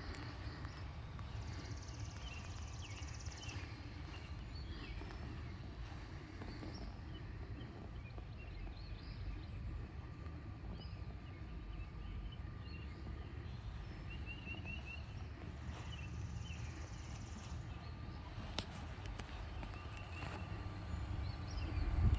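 Quiet outdoor ambience: a steady low rumble, a faint steady hum, and scattered bird chirps, including a quick run of chirps in the middle.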